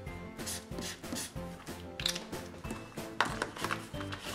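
Soft background music, with a few brief scratchy strokes of a chisel-tip highlighter drawn across paper.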